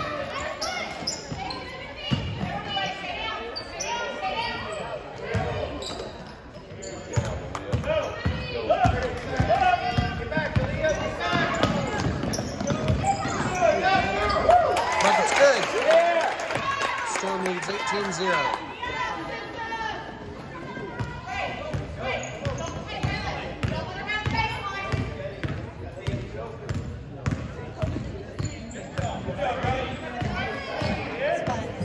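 A basketball bouncing on a hardwood gym floor during play, with voices from the court and stands ringing in the hall; the action and voices grow louder around the middle.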